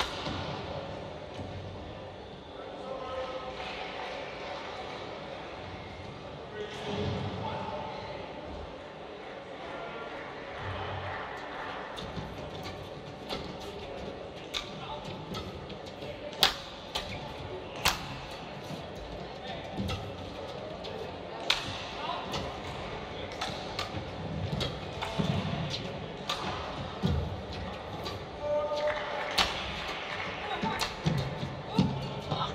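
Badminton rackets striking a shuttlecock in a doubles rally: a string of sharp cracks, irregular and about a second apart, beginning about a third of the way in after a stretch of quieter hall murmur.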